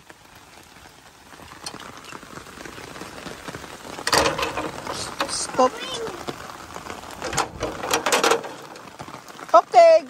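Steady rain falling on pavement, with clattering knocks from the green metal gate being closed and handled about four seconds in and again around seven to eight seconds.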